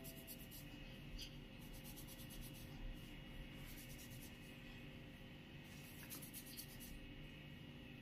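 Fingers rubbing and working through oiled, wet hair against the scalp: a faint crackly rustle that comes and goes in spells.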